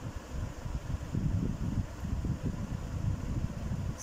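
Low, uneven rumble of background noise with no speech.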